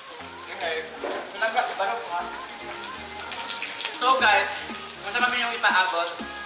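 Pork slices sizzling on an electric grill pan, with background music and a voice over it.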